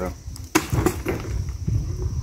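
Insects chirring steadily in the background over a low rumble, with one sharp click about half a second in and a few faint murmured voice sounds.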